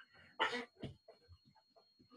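A man coughing, a short sharp cough about half a second in followed by a smaller one.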